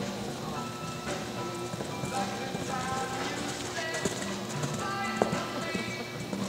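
Music playing, with a horse's hoofbeats as it canters over dirt arena footing. There is one sharp knock about five seconds in.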